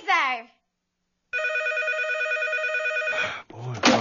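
A telephone ringing: one steady, fast-trilling ring lasting about two seconds after a short pause. Near the end a short, loud burst of noise cuts across it.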